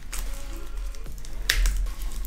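Clear plastic shrink-wrap crinkling and crackling as it is pulled off a cardboard phone box, with one sharp crackle about one and a half seconds in, over faint background music.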